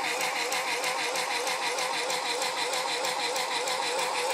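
Electric motor of a battery-powered automatic male masturbator running, its single motor driving the telescopic thrusting and rotation: a steady whine with a slightly wavering pitch and a fast, even rattle, reading about 65 dB on a sound level meter held beside it. The device is shaking hard as it runs.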